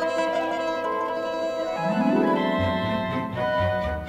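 Orchestral film score music with strings holding sustained notes; a low bass line comes in a little past halfway through.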